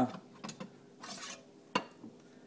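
A kitchen knife being picked up and handled over a pie dish: a light click about half a second in, a brief scrape, and a sharp clink near the end.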